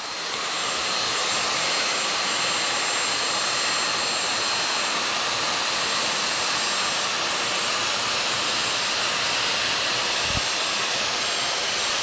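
Dyson vacuum cleaner running steadily with a thin high whine, its hose and crevice tool sucking up tiny spilled glass beads.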